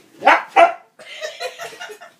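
Dog barking twice in quick succession during rough play, followed by a run of quieter, shorter noises.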